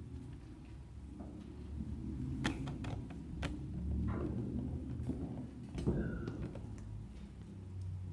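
Quiet hall with a steady low hum and a few scattered light knocks and clicks, with one brief squeak about six seconds in.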